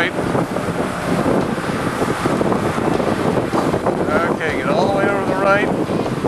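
Steady rush of engine, tyre and wind noise inside the cabin of a BMW 335i driven at speed around a race track.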